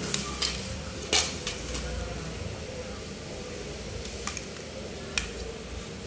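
Scattered light clicks and taps as a carbon fishing rod is handled, the loudest about a second in and two more near the end.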